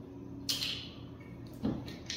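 Two brief handling noises, about half a second in and again near the end, as a hand takes hold of a glass bourbon bottle and its screw cap.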